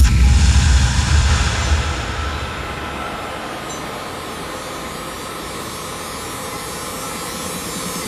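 A sudden thud followed by a deep low rumble that fades over about three seconds, then a steady faint hum and hiss.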